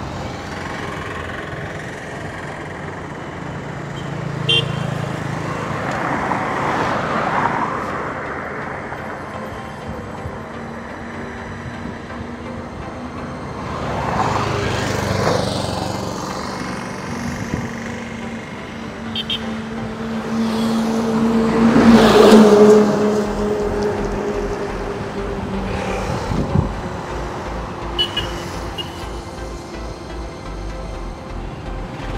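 Road traffic passing on a highway, vehicles going by in waves. The loudest is a heavy vehicle with a steady engine tone about 22 seconds in. A low, evenly pulsing engine note runs through the last several seconds.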